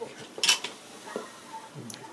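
A sharp metallic clink about half a second in, then a fainter click near the end, from small metal tools being handled.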